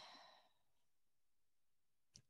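Near silence: the faint breathy tail of a spoken word fades out in the first half second, then only faint room tone.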